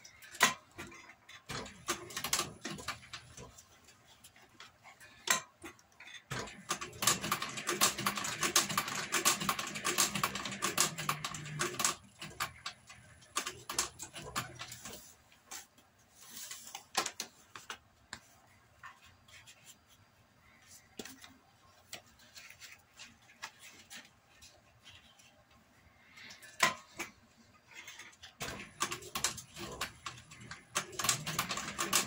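Industrial leather sewing machine stitching through thick leather straps in short runs: a rapid clatter of needle strokes, the longest run lasting about five seconds near the middle, with scattered single strokes and clicks between runs.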